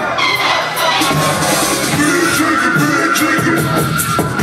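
Loud live hip-hop music, playing continuously.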